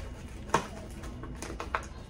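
Papers and folders handled inside a bag, with a few light clicks and a sharp tap about half a second in.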